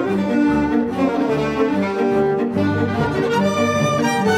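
Chamber orchestra playing, led by bowed strings: violins, cello and double bass. A low bass note comes in a little past halfway and is held.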